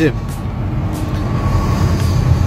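Steady low engine and road rumble heard inside the cab of a moving vehicle.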